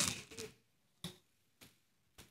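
A man's voice trails off at the start, then a pause of near silence broken by a faint click about a second in.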